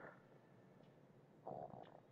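Near silence: room tone, with a faint short sound about one and a half seconds in.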